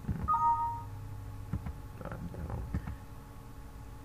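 A mouse click, then a short two-tone Windows system chime as a query-result message box pops up on the computer.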